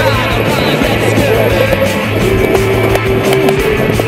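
Rock music soundtrack playing steadily, with skateboard wheels rolling on concrete mixed in.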